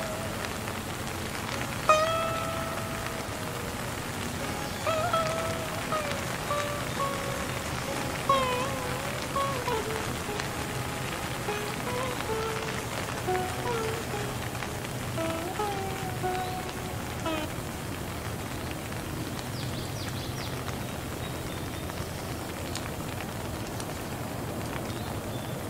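Steady rain falling. Over it, a slow sitar melody of single plucked notes with bending pitches starts about two seconds in and fades out about two-thirds of the way through, leaving only the rain.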